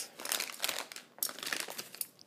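Plastic grocery packaging crinkling as it is handled, in irregular bursts: a plastic-wrapped net bag of mandarins and potato chip bags being picked up and moved.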